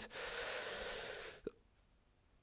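A man's long, exasperated breath out into a close microphone, lasting about a second and a half and breaking off suddenly.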